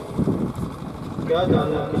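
A person speaking to the gathering; the voice pauses for the first half, with only a low background rumble, and resumes a little past halfway.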